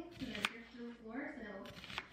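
Kitchen knife cutting through an onion and knocking on the cutting board, two sharp knocks a bit over a second apart, under a voice talking.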